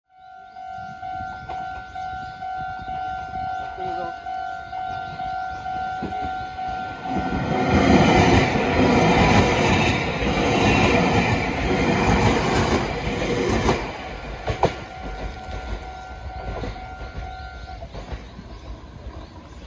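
A Japanese level-crossing warning bell rings with a steady, pulsing two-tone ding and stops just before the end. An electric commuter train runs through the crossing from about seven seconds in, its rumble loudest for several seconds before it fades with a few wheel clicks over the rail joints.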